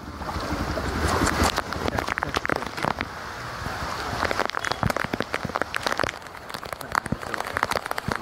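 Heavy rain and fast-flowing floodwater washing across a street, splashing around feet wading through it, with a dense, irregular patter of sharp taps throughout.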